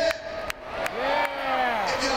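A single drawn-out voice over the arena sound system, its pitch rising and then falling in one smooth arch for about a second. Two sharp knocks come shortly before it.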